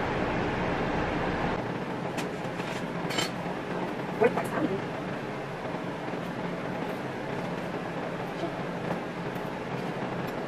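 A kitchen knife cutting through a loaf of bread on a wooden cutting board, with a few sharp knocks and crunches, the loudest about four seconds in, over a steady background hum.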